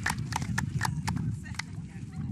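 A run of irregular sharp clicks and taps, several a second, over a low steady rumble.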